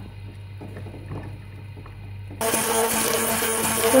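Faint low hum, then about two and a half seconds in a Braun immersion hand blender comes in abruptly, running loud and steady with a constant whine as it emulsifies oil and lemon juice.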